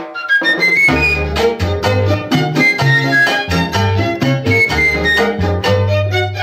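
Cuban charanga orchestra playing: violins and flute over a walking bass and percussion. This is the instrumental opening of a 1950s recording, with no singing.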